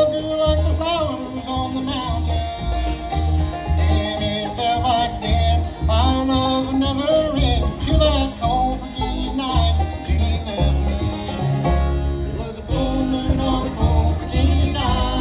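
Bluegrass band playing live: banjo, acoustic guitar, fiddle and upright bass, the bass pulsing steadily on the beat, with a lead voice singing over it.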